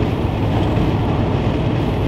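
Steady road and engine noise heard inside the cabin of a moving van.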